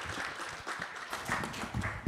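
Applause from a small group: many quick hand claps blending together, thinning out toward the end.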